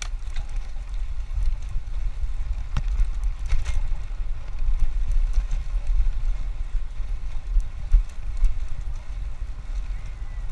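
Wind buffeting the microphone of a camera on a moving road bicycle, with tyre noise from the concrete path and a couple of brief clicks about three to four seconds in.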